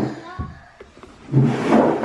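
Indistinct talking, with a quieter lull in the first half and voices again from about halfway through.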